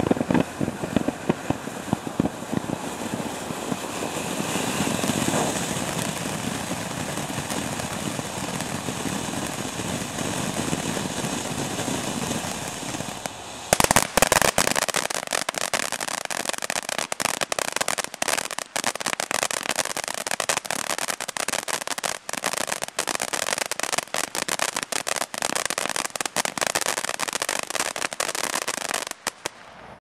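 Short Circuit fountain firework burning: a steady rushing hiss of sparks, which about 14 seconds in switches abruptly to a dense, rapid crackling. The crackle dies away just before the end.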